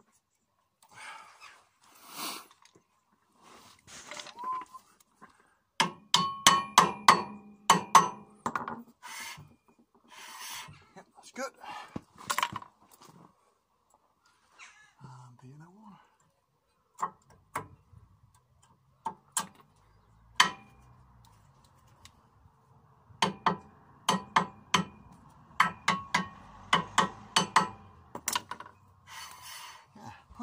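Brake pads and caliper hardware being handled and seated into a disc brake caliper carrier: bursts of quick metallic clicks and clinks, a dense run about six seconds in and another from about twenty-three seconds, with single knocks between.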